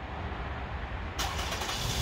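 2013 Toyota Sienna minivan's engine starting by remote start. About a second in, the sound rises suddenly as the engine cranks and catches, then keeps running.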